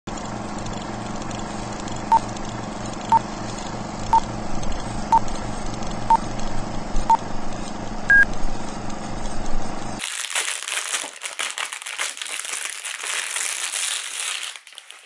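Old-film countdown intro effect: crackling hiss and hum with a short beep once a second, six times, then a single higher beep. About ten seconds in it gives way to clear plastic wrapping crinkling as a roll cake is slid out of its bag.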